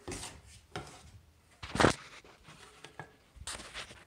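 Handling noise from a phone being picked up and moved: a string of rubs and bumps against its microphone, the loudest a little under two seconds in.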